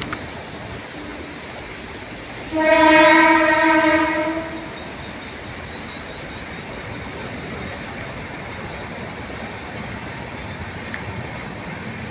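A vehicle horn sounds once about two and a half seconds in, holding one steady, unwavering note for about two seconds over a steady background hiss.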